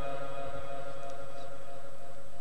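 The tail of a long held note of Quran recitation dying away through the public-address system's reverberation, leaving a steady low electrical hum from the sound system.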